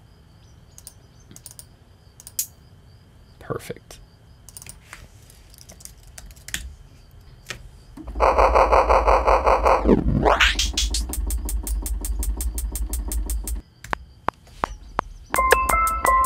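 Mouse clicks on a computer in near-quiet, then about eight seconds in a trap beat starts playing back in Logic Pro X. It has a deep sustained 808 bass and synth, a pitch dip and sweep upward about two seconds later, and a fast run of closed hi-hat ticks. It drops out briefly and comes back near the end with bell-like melody notes.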